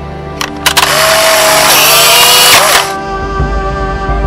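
Dark soundtrack music with an added noise effect: two sharp clicks, then a loud burst of hiss lasting about two seconds that cuts off suddenly, followed by a deep low rumble as the music carries on.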